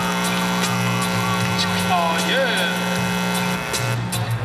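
Music over a sound system: a sustained chord with a held bass note that cuts off shortly before the end, with a few brief sliding vocal sounds over it.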